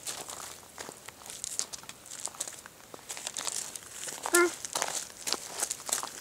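A toddler's footsteps on gravel and the rustling of bush leaves as she moves through them: a steady string of light crunches and crackles. A brief child's vocal sound about four and a half seconds in.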